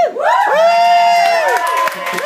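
Audience cheering with loud overlapping whoops: a rising shout, then a long held 'woo' and more rising-and-falling calls from several voices.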